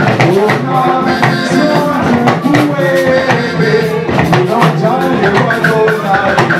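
Worship music: singing voices over drums and percussion with a steady beat.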